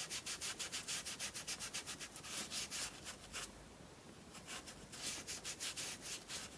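A paintbrush scrubbing acrylic paint onto paper in quick, short back-and-forth strokes, about eight a second. The strokes thin out and turn quieter about halfway, with a few more near the end.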